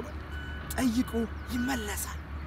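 A man talking in short phrases over a steady low hum.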